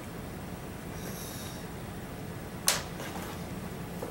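Small handling sounds at a fly-tying bench: a brief faint high scrape about a second in, then one sharp click near the three-second mark, over a steady room hum.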